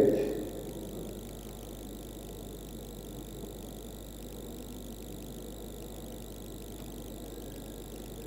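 Steady background hum and noise with no distinct events, consistent from start to finish.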